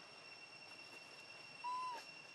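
Steady high-pitched insect drone outdoors. Near the end comes one short whistled animal call, rising a little and then falling.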